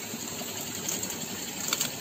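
Harvested tilapia being sorted by hand in a plastic fish crate: a few light clicks and knocks of fish and fingers against the plastic, over a steady background hiss.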